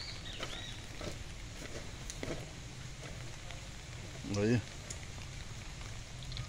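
Outdoor background with a bird chirping near the start and a person's brief exclamation about four seconds in.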